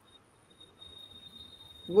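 A faint, steady, high-pitched insect trill that starts about half a second in.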